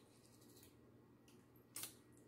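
Near silence, broken by one short wet lip smack near the end as a sauce is tasted from a small cup.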